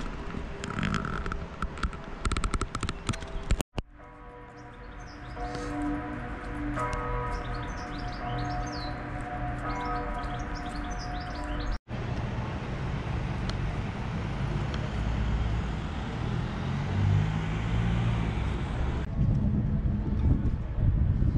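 Outdoor ambience in three takes joined by two abrupt cuts. In the middle take birds are chirping over some steady held tones, and the last take is a steady noisy rumble.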